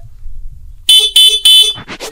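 Scooter's electric horn sounding three short, loud beeps in quick succession, starting about a second in.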